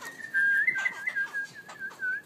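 A wavering whistle held around one high pitch, dipping and lifting in small warbles, with a brief break near the end.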